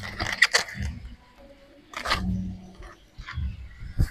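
Large leafy greens rustling and scraping against a tile slab as a hand lays them down, in a few short bursts: the loudest near the start, another about two seconds in.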